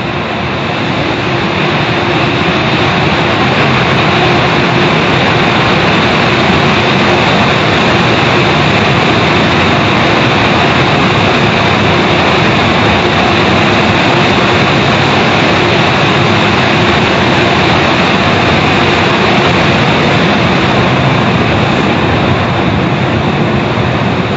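Car wash machinery running with a loud, steady rushing noise that builds slightly over the first few seconds and then holds.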